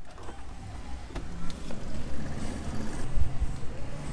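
A car door latch clicking open, then a thud about three seconds in as the door is shut, over the low rumble of street traffic.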